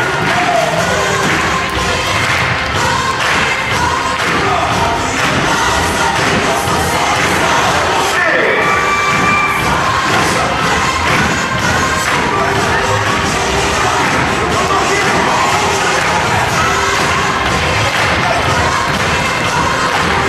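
A crowd of schoolchildren cheering and shouting over loud music.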